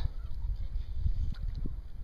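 Wind rumbling on the microphone, with a few faint splashes as a hooked snook thrashes at the water's surface.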